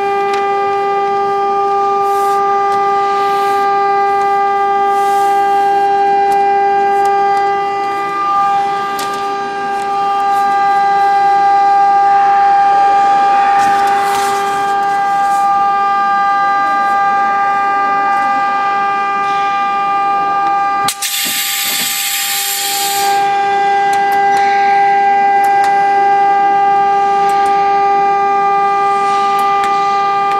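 Membrane forming press running with a loud, steady high-pitched whine, one tone with overtones. About two-thirds of the way through the whine drops out for a couple of seconds and a burst of hiss takes its place, then it resumes.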